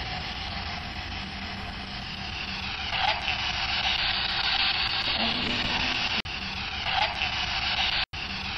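Heavy hiss and static from a ghost-hunting audio recording, over a low hum, offered as an EVP answer to the question just asked. A short stretch of it repeats several times, cut off abruptly between repeats.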